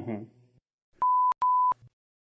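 Two back-to-back censor bleeps: a steady, high, pure beep tone sounding twice for about a third of a second each, with a click as each starts and stops. They are dubbed in to cover offensive words.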